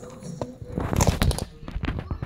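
A quick flurry of sharp knocks and clatters, loudest about a second in.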